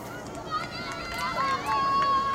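Girls' voices shouting and calling out across a soccer field, with one long held call starting a little past halfway through.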